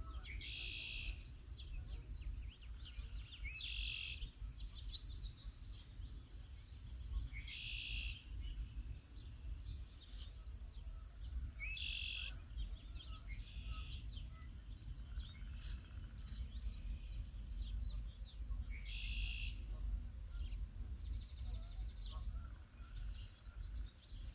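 Wild birds calling: a short, buzzy high call repeated every few seconds, and twice a higher, thinner trill, over a low steady rumble.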